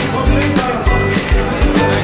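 Background music with a steady beat, about two beats a second, under held melodic notes.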